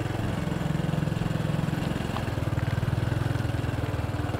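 A small motorbike engine running steadily at low speed, an even low putter with no change in pitch.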